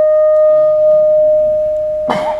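Public-address microphone feedback: a single steady ringing tone, loud at first and slowly fading.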